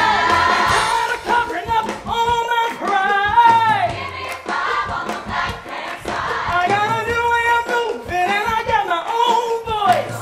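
Live musical-theatre number: sung vocal lines that slide up and down in pitch, with more than one voice, over band accompaniment.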